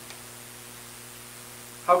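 Steady low electrical hum with a faint hiss: the room tone of the recording between words.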